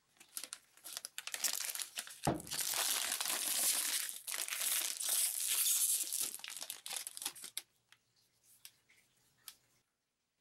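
Thin clear plastic protective wrap being peeled off an iPad and crinkling in the hands, a dense crackle for several seconds that stops about three-quarters of the way through, leaving a few faint ticks.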